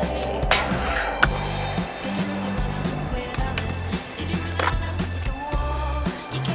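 Skateboard rolling on concrete, with a few sharp clacks of the board striking, the sharpest about a second in, under music with a steady bass line.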